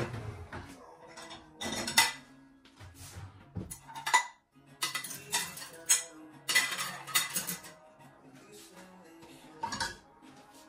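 Ceramic plates clinking and knocking against each other and the racks as they are taken out of a dishwasher and stacked in a cupboard dish rack, in a series of sharp, irregular clinks.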